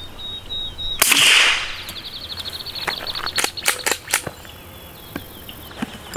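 A single suppressed pistol shot about a second in from an FN 509 fitted with a JK Armament 155LT suppressor, a sharp crack with a brief tail, followed by a few fainter clicks.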